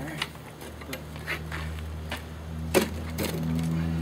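A folding camping table with a plastic top and metal legs being lifted and handled, giving a few scattered knocks and clicks, the sharpest about three quarters of the way through.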